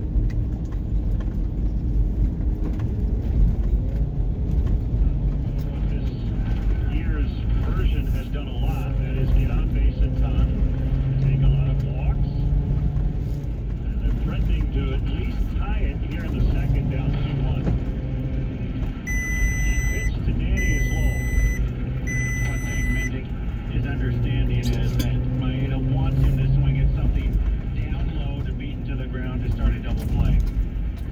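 Steady low road and engine rumble heard inside a moving vehicle on a test run, with a radio sports broadcast talking faintly over it. Three electronic beeps, each about a second long, come about two-thirds of the way in.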